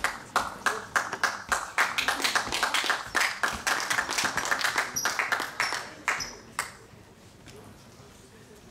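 A small crowd clapping in a sports hall after a table tennis point. The clapping starts sparse, quickly thickens and dies away about six and a half seconds in, with a few short high squeaks among it.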